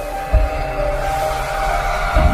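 Music for an animated logo intro: held chord notes over a swelling whoosh, with a deep boom about a third of a second in.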